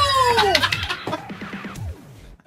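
A loud, drawn-out cheering yell that slides down in pitch and trails off about half a second in, over a background music track. It is followed by a scatter of sharp knocks: a hammer smashing an apple on a table.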